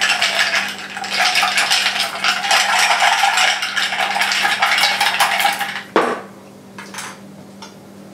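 Ice cubes clinking and rattling against a tall highball glass as they are stirred fast with a chopstick for about six seconds. This is followed by a single sharp knock as the glass is set down on the table, then a few faint clinks.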